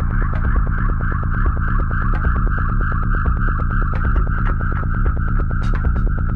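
A 2001 acid techno track: a heavy, steady low end under fast, evenly spaced ticking, with a bright synth line held on one pitch above. A single bright hit comes near the end.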